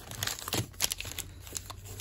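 Wrapper of a football trading-card pack crinkling as it is handled, a few short crackles.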